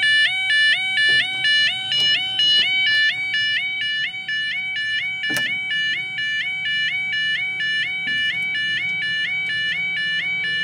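UK level crossing yodel alarm sounding a fast two-tone warble, its two pitches alternating about twice a second without a break; it is the crossing's flat-tone alarm. A single sharp click cuts through about five seconds in.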